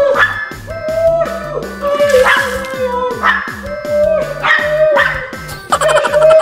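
Background music with a steady beat and a repeating melody, with a small dog barking repeatedly over it.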